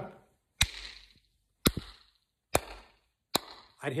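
A hand striking a hard surface four times, sharp knocks about a second apart, each dying away quickly.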